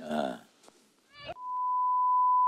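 A short rising squeak, then a steady electronic beep at one pitch that starts about two-thirds of the way in and holds.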